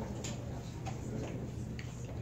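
Quiet room tone: a steady low hum with a few faint, light ticks about half a second apart.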